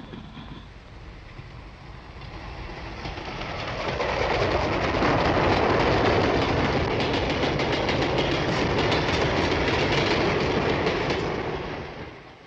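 A freight train of covered goods wagons passes close by. Its rumble builds over the first few seconds, then holds with a run of rapid wheel clicks over the rail joints, and dies away near the end.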